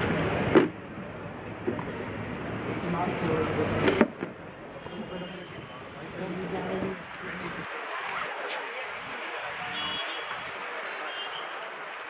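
People's voices talking outdoors at a cricket ground, with two sharp knocks, one about half a second in and one about four seconds in. The talking thins out to quieter outdoor background in the second half.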